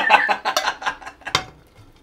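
Laughter in short, choppy bursts that die away about a second in, with one sharp knock just after halfway, as a frying pan is set down on a ceramic hob.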